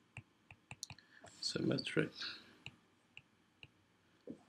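Stylus tip clicking on a tablet's glass screen during handwriting, in light irregular taps several times a second. A short muttered voice sound comes about one and a half seconds in.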